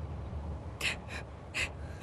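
A woman crying, taking three short, gasping breaths in quick succession starting a little under a second in.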